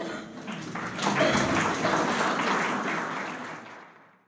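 Audience applauding: clapping that builds up about a second in, holds, then fades away near the end.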